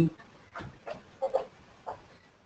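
A man's voice making a few short, quiet murmured grunts, hum-like sounds, with pauses between them.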